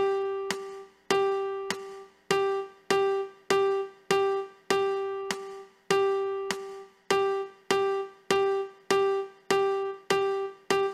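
Piano playing a rhythm-pattern exercise on one single note, struck again and again in a steady beat, with a few notes held longer.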